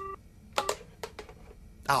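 Telephone engaged (busy) tone heard from a handset: its last steady beep cuts off just after the start, followed by a few faint clicks.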